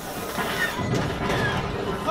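Sound effects from the Millennium Falcon: Smugglers Run simulator ride during its train-chase scene: a dense, low rumbling of the train and the chase, swelling about half a second in.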